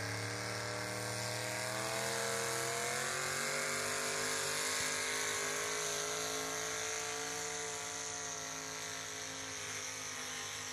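Small-block V8 engine of a 4x4 pull truck running hard as it drags a weight-transfer sled. The engine pitch climbs over the first few seconds, holds high, and eases off a little near the end.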